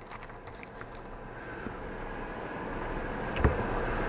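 Dry sphagnum moss crackling faintly as it is worked by hand, over an even rushing noise that grows steadily louder, with one sharp click about three and a half seconds in.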